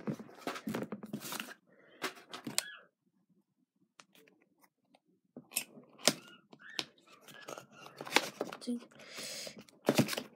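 Trading cards and their cardboard box being handled by hand: irregular clicks, taps and rustles, with a near-silent pause of about two seconds in the middle and a short scraping slide near the end.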